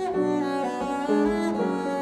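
Double bass played with the bow in a slow melodic line of several connected notes, with piano accompaniment. A struck chord sounds right at the start.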